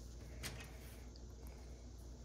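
Faint click of a small plastic 1:12 scale toy rifle magazine being handled and pushed into the toy rifle, once about half a second in, over a low steady hum. The magazine is a loose fit.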